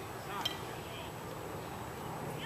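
Open-air noise at a youth baseball field, with faint distant voices of players and spectators. A single sharp click cuts through about half a second in.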